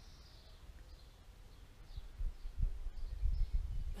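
Quiet garden ambience with a few faint bird chirps, and a low rumble on the microphone that grows louder about halfway through.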